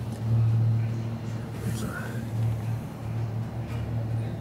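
A steady low hum of machinery that swells for about the first second, with a single spoken word about halfway through.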